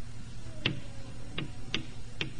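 Three short, sharp taps, irregularly spaced, over a steady low background hum.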